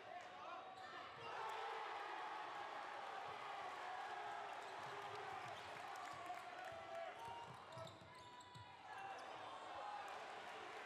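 A basketball is dribbled on a hardwood gym floor, bouncing again and again, under the steady chatter and calls of a crowd in the gym.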